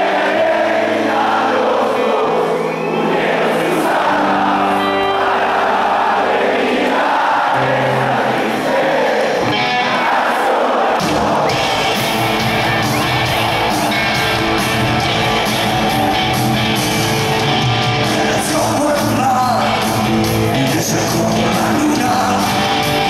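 Live rock concert in a large hall: a big crowd singing along over guitar, with the full band's bass and drums coming in about halfway through.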